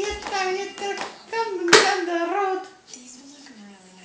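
A toddler vocalizing in long, high sing-song vowels that glide up and down, with one sharp slap a little before halfway; the voice stops near the three-quarter mark.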